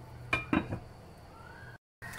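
A glass pot lid set down on a metal cooking pan, clinking two or three times about half a second in.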